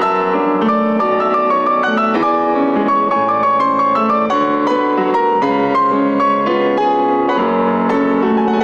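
Solo grand piano playing classical music live, a steady flow of notes struck several times a second across the middle and upper register.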